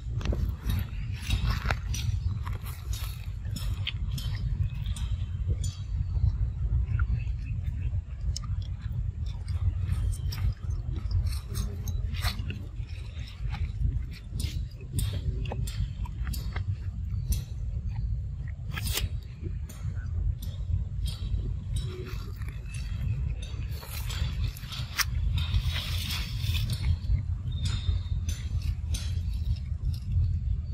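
A macaque chewing and handling a piece of mango, heard as many short clicks, smacks and rustles over a steady low rumble.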